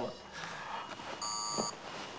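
Hospital bedside patient-monitor alarm: one beep of several high tones sounding together, about half a second long, a little over a second in. It sounds as the ventilated, head-injured patient goes into a seizure.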